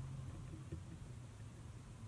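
Quiet room tone with a steady low hum, and a few faint small ticks a little under a second in.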